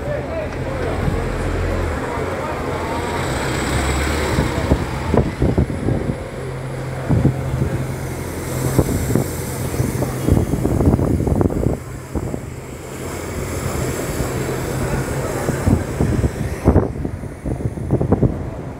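London double-decker buses pulling away and passing close by, a low engine hum over steady street traffic noise that fades about fifteen seconds in. Wind buffets the microphone throughout.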